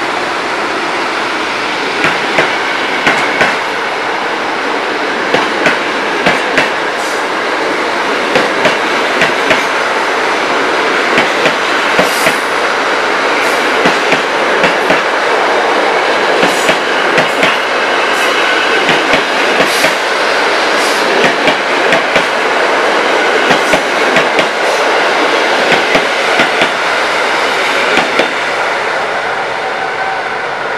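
Passenger coaches rolling past on the rails, a steady rumble with regular sharp clicks as the wheels cross rail joints, often in quick pairs.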